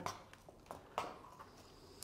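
A horse's hooves stepping on a concrete barn floor as the mare moves over: a few faint, separate knocks, the clearest about a second in.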